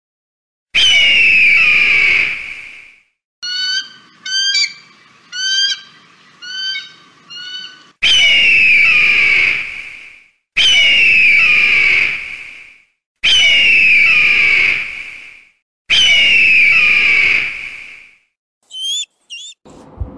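Bird-of-prey screams: five long, hoarse screams, each falling in pitch over about two seconds, with a run of about six short rising calls between the first and second scream and two more short calls near the end.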